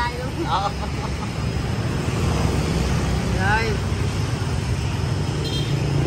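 Steady low rumble of road traffic, with brief snatches of voices.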